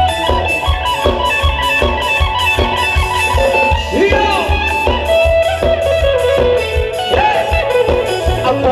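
Live band playing Thai ramwong dance music: a quick, steady drum and bass beat under a lead melody with sliding, bent notes.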